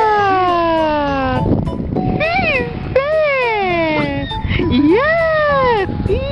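A toddler's drawn-out wailing cries, four or five long vowels in a row, each sliding down in pitch or arching up and then down, in protest at sand being put in her hand.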